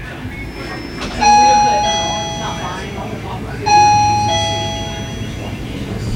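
A two-note ding-dong door chime sounds twice, about two and a half seconds apart, each time a higher note followed by a lower one that rings on and fades. Voices murmur in the background.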